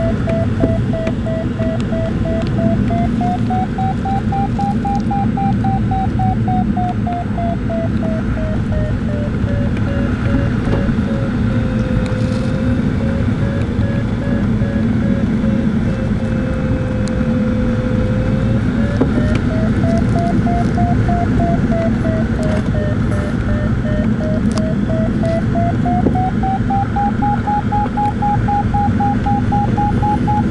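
Glider variometer's audio tone sliding slowly up and down in pitch as the climb and sink rate changes, over steady airflow noise in the cockpit.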